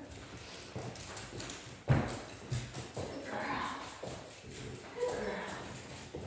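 Footsteps and a dog's claws clicking on a hardwood floor as a person walks a dog on a leash, with a louder thump about two seconds in.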